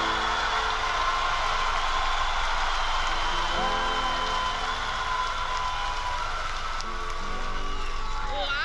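Large theatre audience applauding and cheering at the end of a sung performance, a steady wash of clapping, with music and a few voices underneath.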